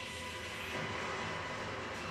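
Steady rumbling, hissing sound effect from an anime fight scene's soundtrack, with faint background music.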